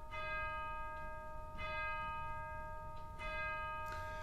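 A bell struck three times, about one and a half seconds apart, each stroke ringing on steadily into the next.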